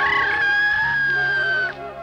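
A rooster crowing once: one long held call that sinks a little and cuts off shortly before the end, over background music.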